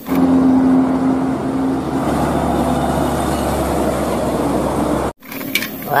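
A Hino tanker truck driving on the road: diesel engine and tyre noise, with a steady engine note for the first two seconds giving way to a low rumble. The sound cuts off suddenly about five seconds in.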